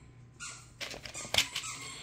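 A dog whining faintly in the background, with a short high squeak about half a second in, followed by a few sharp clicks.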